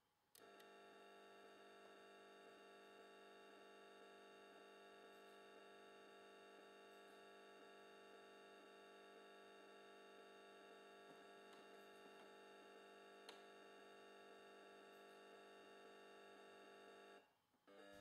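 Near silence with a faint steady electrical hum made of many held tones, which starts just after the beginning and cuts off about a second before the end.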